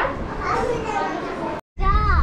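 Children's voices and chatter indoors, cut off suddenly near the end. Just after the break comes a low, steady car-cabin rumble.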